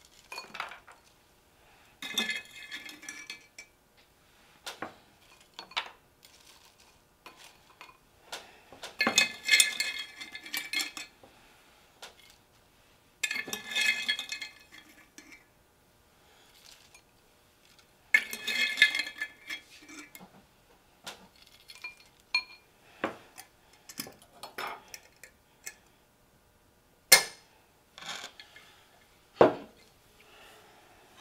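A metal spoon scraping and clinking against a glass jar as croutons are scooped out, in four rattling bursts of a second or two each. Single sharp clicks fall between the bursts, and two loud ones come near the end.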